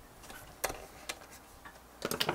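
Three light clicks about half a second apart, the first the loudest, as a hand handles the back panel of a hard-drive enclosure.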